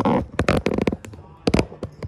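Handling noise: a quick run of sharp clicks and knocks in the first second, then a couple more about a second and a half in, as the recording phone or camera is moved and reframed.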